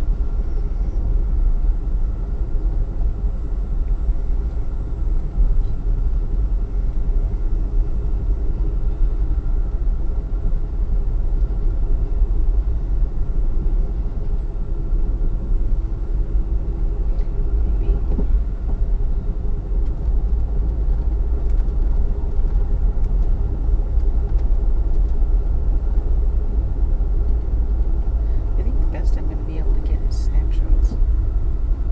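Steady low rumble of a moving Amtrak Empire Builder passenger train heard from inside the coach, with a few short clicks near the end.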